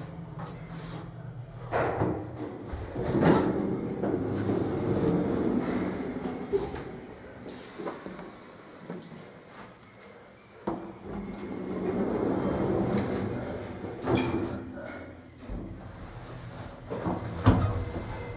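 Koch traction elevator, modernised by Zippels Aufzug Dienst, with the car's sliding doors running and clunking at the landing. Near the end a low rumble comes in as the car travels down, and a sharp thump follows just before the end.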